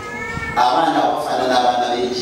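Speech: a man talking into a handheld microphone, his voice raised high and drawn out, amplified through loudspeakers in a large hall.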